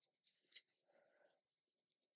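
Very faint soft scratching of a makeup brush sweeping powder bronzer across skin, a few short strokes, the clearest about half a second in.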